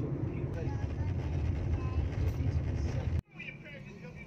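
Steady low rumble of a car cruising on a highway, heard from inside the cabin, with faint voices in the background. The rumble cuts off abruptly a little after three seconds in, leaving much quieter cabin sound.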